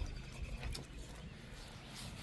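Faint footsteps and light rustling of a person walking across a pumpkin patch laid with plastic sheeting, a few soft steps spread through, over a low steady rumble.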